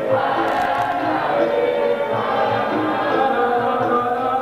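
Capoeira angola chorus: a group of voices singing the call-and-response of the roda together, with the roda's berimbaus and percussion underneath.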